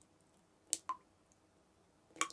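Two faint short clicks close together, about three quarters of a second in, over a low hiss.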